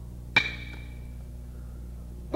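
A single sharp wooden percussion strike from a Chinese opera accompaniment, a crack that rings briefly and dies away quickly, about a third of a second in.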